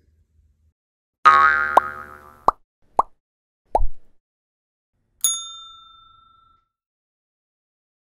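Cartoon-style end-card sound effects. A short bright jingle comes about a second in, then three quick plops, then a clear ding about five seconds in that rings away over about a second.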